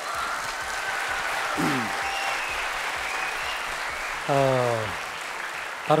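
Studio audience applauding, a steady wash of clapping. A man's voice calls out briefly twice during it, the second time about four seconds in.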